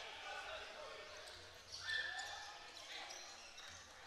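Faint basketball-arena ambience during live play: distant voices and court noise from the game, with a brief pitched sound about two seconds in.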